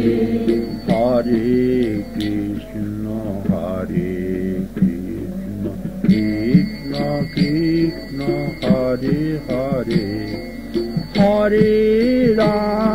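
Devotional kirtan singing: a sung melodic line over sustained accompaniment, with short percussive strikes keeping a regular beat.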